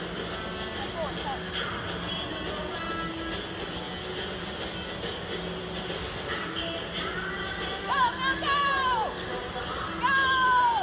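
Background music plays steadily throughout. About eight seconds in, a horse whinnies: a loud, high call that falls in pitch over about a second.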